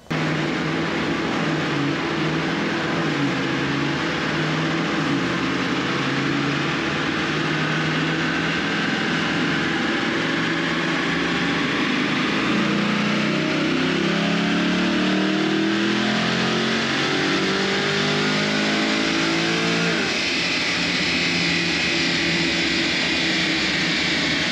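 C8 Corvette's LT2 6.2-litre V8, with ported and milled heads and an SS2 camshaft, running a full-throttle chassis dyno pull. The engine note climbs steadily in pitch for about twenty seconds, then falls away near the end.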